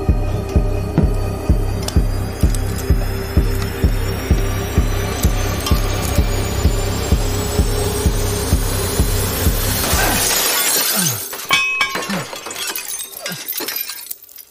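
Suspense film score: a low pulse beating about twice a second under a slowly rising whine. About ten seconds in it cuts off as a pane of glass shatters, followed by a few sharp clinks and knocks.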